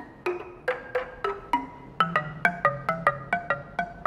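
Wooden-keyed balafon struck with a single mallet, played one-handed by a novice. It gives unevenly paced single notes, each ringing briefly, which come quicker in the second half.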